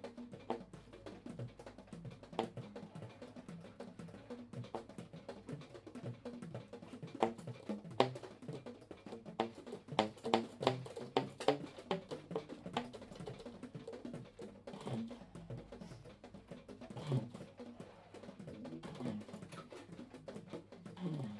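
Baritone and tenor saxophones played percussively: an irregular scatter of short clicks and pops with brief low notes, busiest about halfway through.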